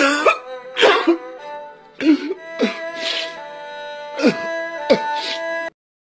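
A man sobbing and crying out in a string of short, gasping wails over music with long held notes; both stop abruptly near the end.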